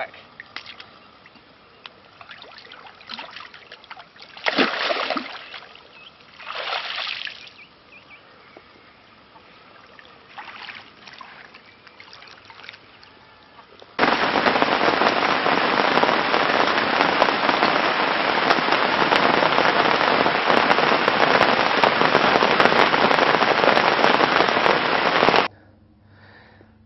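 Heavy rain falling on puddled mud, a dense, even hiss that starts abruptly about halfway through and cuts off just before the end. Before it come a few water splashes as a mirror carp is slipped back into the lake.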